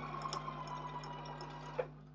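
Electric sewing machine stitching fabric at a steady speed, stopping with a short click near the end.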